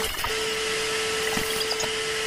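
Tape-static sound effect: a steady hiss of noise with a single steady hum tone under it, the hum dropping out briefly just after the start.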